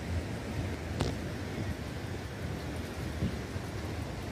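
Steady wind noise on the microphone over the rush of a flood-swollen river, with one sharp click about a second in.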